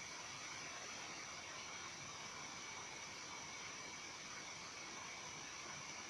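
Steady faint hiss of room tone and recording noise, with a thin high steady whine in it.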